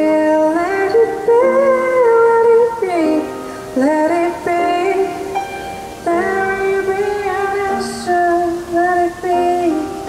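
A woman singing a slow ballad while she plays a grand piano, with long held notes that slide between pitches.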